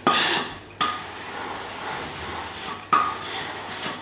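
Steam-generator iron releasing steam onto cotton fabric: a sharp hiss at the start, a steadier, quieter hiss for about two seconds, then another sharp hiss about three seconds in.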